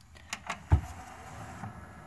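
Sony DVP-CX985V 400-disc changer's front door sliding shut, with a few clicks, a thump under a second in, then a low steady mechanism hum.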